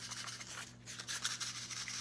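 A small cellophane-wrapped box being shaken close to the ear, its contents (a necklace) rattling lightly with a sound like rice, mixed with crinkling of the plastic wrap.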